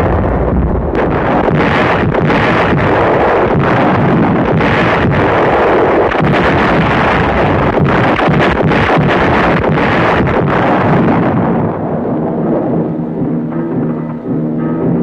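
Artillery guns firing and shells bursting in a continuous run of blasts over music. About twelve seconds in, the blasts die away and orchestral music with held notes takes over.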